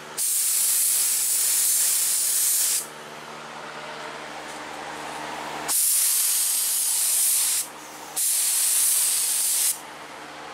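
Handheld air spray gun spraying 2K high-build primer in three trigger pulls, a loud rush of air and atomised primer that starts and stops sharply each time. A quieter steady hum fills the gaps between pulls.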